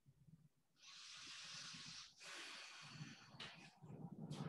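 Faint, slow breathing close to the microphone: two soft, hissy breaths one after the other, starting about a second in, as part of a paced yoga breath. A few small rustles follow near the end.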